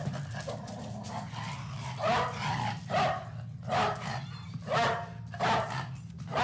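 A dog barking repeatedly, about once a second from two seconds in, over a steady low hum.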